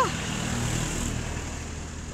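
Road traffic going past: a steady low vehicle rumble, a little stronger in the first second.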